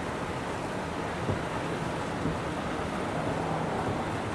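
Steady running noise of a slow sightseeing road train, with a low hum from its drive and wind rumbling on the microphone.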